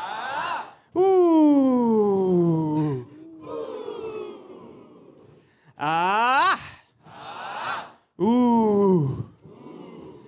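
Vocal call-and-response: one voice through the PA sings wordless calls, first a long loud one sliding down in pitch, then two short ones that rise and fall, and a crowd of audience members echoes each call back, quieter.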